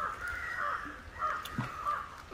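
A crow cawing twice, each caw drawn out and raspy.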